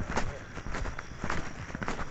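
Footsteps of people walking at an even pace, about two steps a second.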